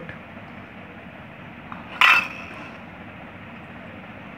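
A single short, sharp clink of a stainless steel bowl being set down, about two seconds in, over a steady faint background hiss.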